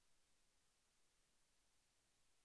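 Near silence: faint steady hiss, with no distinct sound.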